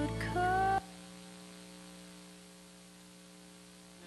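Music with a held sung note cuts off abruptly under a second in, leaving a faint, steady electrical mains hum from the sound system.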